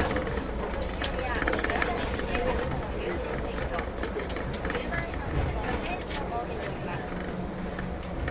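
Passengers' voices in the carriage, not clear words, over the steady low rumble of a rubber-tyred Yurikamome automated train running on its guideway.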